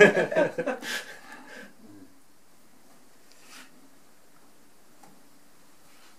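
Talking and laughter for the first second or two, then quiet room tone with a faint steady hum and one brief soft rustle about halfway through.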